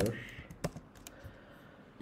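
A few light computer keyboard keystrokes while code is typed, most of them in the first second.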